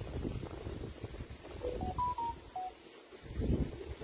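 A quick run of five short electronic beeps at different pitches, stepping up and then back down, about halfway through, over a low rustle.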